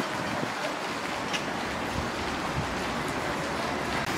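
Steady outdoor background noise, an even hiss without a distinct source, with a faint click about a second in.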